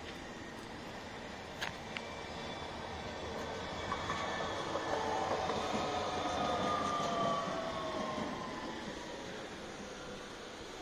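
A tram passing on the street: its noise swells to a peak past the middle and then fades, with a whine that slides slowly down in pitch. Two sharp clicks come near the start.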